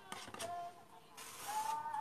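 Metal palette knife drawing wet acrylic paint across canvas: a soft scraping rasp, strongest in the second half.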